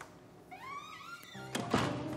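A door creaks open with a rising squeal, then film-score music comes in with sustained notes and a loud thunk just before the end.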